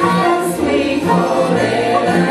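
Live gospel song: a woman's voice leads at the microphone with several voices singing together, over low accompanying notes that repeat steadily underneath.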